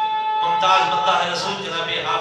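A man's voice reciting in a chanted, melodic style; a long held note ends about half a second in, and the recitation carries on.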